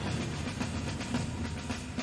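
Dramatic news-bumper sound design: a low rumbling bed with faint repeated ticks under it and no speech, easing slightly toward the end.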